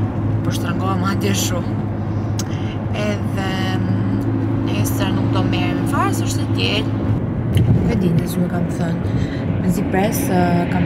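A woman talking over the steady low hum of a car's engine and road noise inside the cabin.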